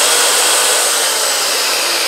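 Corded circular saw running free with no load: a loud, steady motor whine with a high tone on top, having already spun up to full speed.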